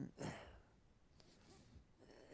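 A man's short breathy sigh between spoken phrases, a fraction of a second in, then near silence with faint room tone.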